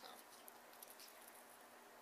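Near silence: faint room hiss with a few faint light ticks.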